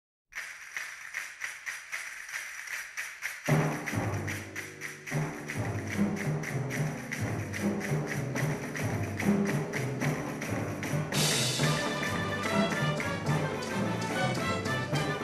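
Opening title music of a western film score. A quick, even rattling rhythm starts it. Low instruments come in at about three and a half seconds and fill out at about five. A bright crash comes at about eleven seconds, followed by higher notes.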